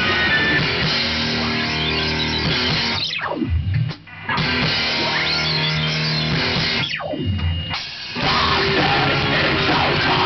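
Heavy metal band rehearsing a song, with distorted electric guitars and drum kit playing a heavy riff. Twice the full band stops short for about a second before crashing back in.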